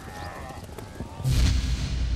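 A sudden deep boom about a second in, followed by a low rumble that carries on.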